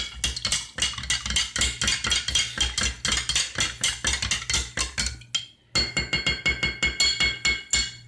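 A long-handled utensil stirring rapidly inside a glass carafe of liquid, knocking against the glass about five times a second. The knocking breaks off briefly a little after five seconds, then resumes with the glass ringing.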